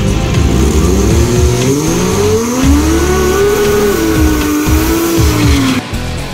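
Pickup truck's engine revving up, its pitch climbing over about two seconds and then held high and wavering, with tyre squeal, over background music.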